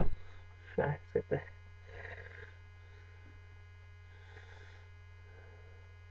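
Steady low mains hum on the recording, with a click at the start and a few short chuckles from a man about a second in.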